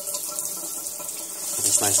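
Water running steadily from a kitchen faucet through a 1.5 GPM dual-spray aerator into the sink, as the aerator is turned from spray to a solid stream.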